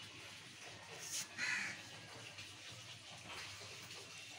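A single short, harsh animal call about a second and a half in, just after a brief faint tick, over a faint steady background hum.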